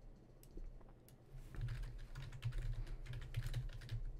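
Faint typing on a computer keyboard: a rapid, uneven run of keystrokes starting about a second and a half in.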